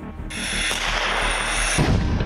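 A loud hissing rush lasting about a second and a half, then a deep boom near the end as a tank's main gun fires, over faint background music.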